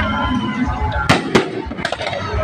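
Fireworks display: three sharp bangs of bursting shells in quick succession from about a second in, over voices and music in the background.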